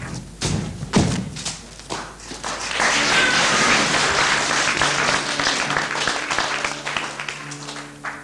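A few thuds and knocks on the stage, then audience applause from about three seconds in, slowly fading near the end as the scene blacks out.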